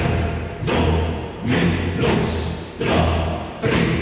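Music made of deep drum strikes, roughly one a second and slightly uneven, each hitting sharply and ringing out low before the next.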